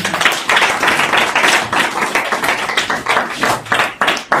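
Several people clapping their hands, quick and uneven, many claps a second.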